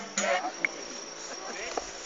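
Insects in the lakeside grass keeping up a steady high-pitched buzz, with faint voices of people nearby.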